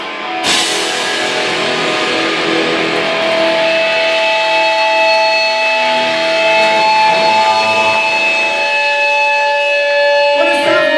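Live hardcore punk band played through a loud club PA: a crash hit about half a second in, then distorted electric guitars ringing out, with steady feedback tones held for several seconds over cymbal wash.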